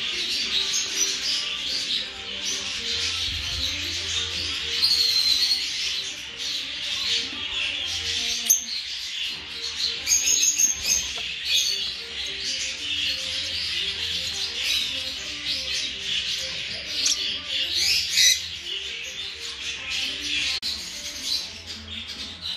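Many parrotlets chirping and calling without a break, with music playing underneath.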